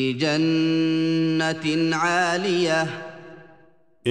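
A man chanting Arabic Quran verses in the melodic tajweed style, holding long drawn-out notes with a wavering ornament in the middle, then fading out near the end.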